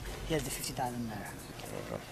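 A man's voice making brief, wordless vocal sounds with a sliding pitch, over a steady low background hum.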